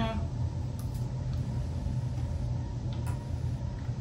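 Steady low room rumble with a few faint light clicks, as of small plastic lab bottles or a pipette being handled.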